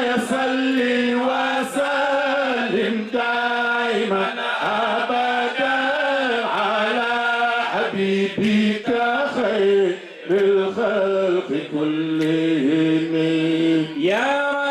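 Male voice chanting an Arabic religious poem through a microphone, in long, wavering held notes with brief breaks for breath.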